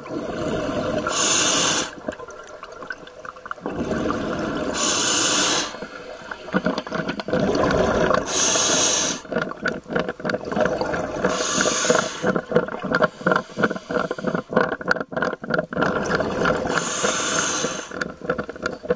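Scuba diver breathing through a regulator underwater: five breaths, each a short hiss of air drawn through the demand valve, followed by a longer gurgling rush of exhaled bubbles.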